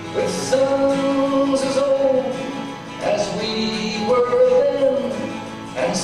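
A man singing a folk song to his own acoustic guitar: two long, drawn-out sung phrases with a short break between them, heard from a distance in a large hall.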